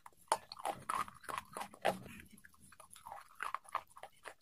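Close-up biting and chewing of brittle, dry clay-like squares: a quick string of crisp crunches, strongest in the first two seconds, then quieter chewing crunches.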